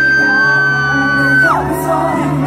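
A fan's long, very high-pitched scream held at one pitch, with a second, lower scream joining it briefly, cutting off about a second and a half in. Underneath, a slow K-pop ballad's sustained backing music plays.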